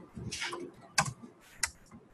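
Computer keyboard typing: a quick run of key clicks followed by a few separate, sharper key strikes, the loudest about a second in.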